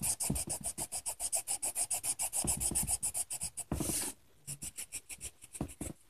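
Felt-tip marker scribbling on paper: quick back-and-forth colouring strokes, about seven a second, with one longer stroke about four seconds in and fainter strokes after it.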